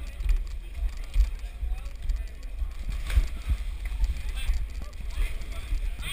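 Uneven low rumble of wind and movement buffeting a body-worn camera's microphone as the wearer swings along overhead monkey bars, with a few short knocks and distant voices of a crowd.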